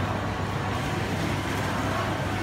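Steady ambience of a busy indoor food court: a continuous low hum under an even wash of background noise.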